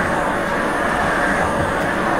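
Duplex steam cleaner running on high, a steady noise, as its steam-fed microfiber head is scrubbed back and forth over the carpet.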